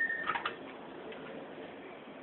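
A short, steady high beep right at the start, overlapping a few quick clicks of hands handling the plastic and metal parts of an opened laptop, over a steady background hiss.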